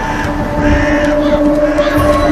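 Film soundtrack: a dramatic score holding long steady notes over the rush of floodwater, with wavering high voice-like cries about halfway through.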